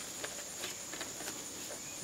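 Steady high-pitched drone of insects chirring in the background, with a few faint clicks as metal tongs pick through a foil pan.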